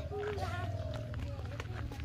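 Faint voices and a held call, over a low rumble on the phone's microphone, with running footsteps.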